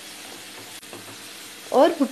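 Baingan bharta frying in oil in a ceramic-coated pan, a steady sizzle as a spatula stirs and mashes it, with the oil beginning to separate from the masala.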